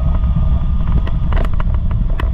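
Heavy wind noise on the front-row camera microphone as a Morgan steel roller coaster train runs at speed along the track and into a climb. Through it come repeated sharp clacks and rattles from the train.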